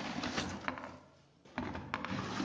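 Rustling and crinkling of white plastic wrapping as a motorcycle helmet is pulled out of it in a cardboard box, with small clicks; it pauses briefly about halfway through and starts again near the end.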